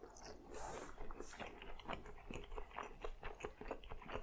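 A person chewing a mouthful of eel nigiri sushi: quiet mouth sounds with many small clicks.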